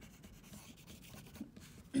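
Oil pastel rubbed back and forth on paper in a faint run of strokes, pressed hard to fill in the last white along the edge of a coloured stripe.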